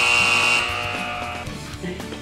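Background music with a loud, steady, high held tone laid over it as a transition sound effect; the tone dies away about a second and a half in.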